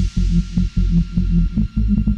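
UK hard house dance music at 150 BPM: a pounding kick and pulsing bass line, with hardly any treble.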